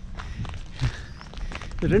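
Footsteps of a person walking along a path, a few soft steps, with a man's voice starting near the end.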